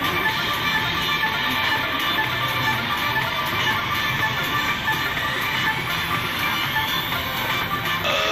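Slot machine bonus-wheel music, a steady guitar-led tune, playing while the prize wheel spins toward its stop.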